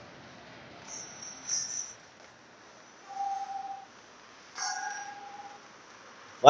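Faint ice-rink sound during live hockey play: a low steady hum, broken by two sharp knocks of stick or puck and a few brief high-pitched tones of blades scraping on ice, one lasting under a second around the middle.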